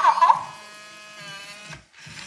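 Electronic plush toy: a short high-pitched burst of its voice at the start, then a steady electric whir from its small motor as it turns itself round, cutting off just before the end.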